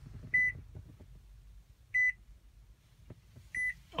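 A 2016 Nissan Pathfinder's interior warning chime beeps three times, evenly spaced about a second and a half apart. Each beep is one short, high tone.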